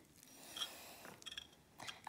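Faint, soft scraping and squishing as a metal spoon and fingers work a cold, thick gel-like slime against the side of a small glass bowl, with a few light clicks.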